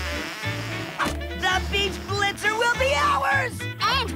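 Cartoon background music with a repeating bass line and short melodic figures, and a brief hissing sound effect right at the start as gas is squeezed into the tires.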